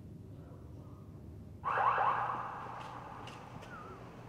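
An electronic alarm sound starts suddenly about a second and a half in, with a few quick rising chirps, then fades over the next two seconds.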